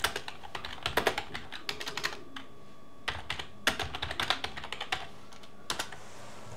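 Typing on a computer keyboard: quick runs of keystrokes with a short pause about halfway through, and a last couple of keystrokes near the end.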